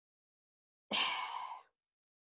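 A woman sighs once about a second in: a short, breathy exhale lasting under a second.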